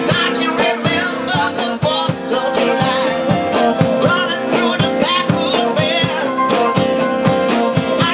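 A live band playing: strummed acoustic guitars and an electronic keyboard over a steady beat, with a man singing.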